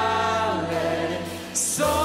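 A live worship band with a lead singer and backing vocals singing a held, sustained line in Japanese. About three-quarters of the way through, the music drops briefly with a short high hiss before the band comes back in.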